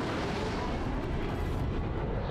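Steady roar of jet aircraft engines in flight, a dense rumble that holds at an even level, from a TV drama's sound effects.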